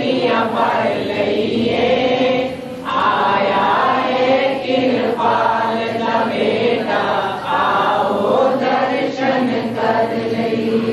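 A group of voices singing a devotional chant together, in sustained phrases of a couple of seconds with brief pauses between them.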